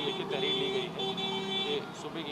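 A man speaking Hindi over road traffic noise, with a steady droning tone underneath.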